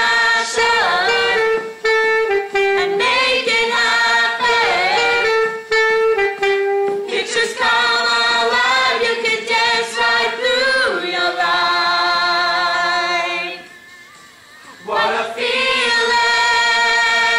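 Group of young singers singing together in rehearsal, with long held notes. The singing breaks off briefly about fourteen seconds in, then starts again.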